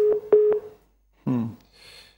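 A steady telephone-line tone, like a dial or busy tone, crackling with a few clicks on a call-in phone line, cuts off under a second in. A short burst of a voice on the line follows.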